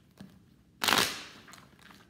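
A deck of tarot cards being riffle-shuffled by hand: the cards rush together in one sharp flutter about a second in, fading over half a second.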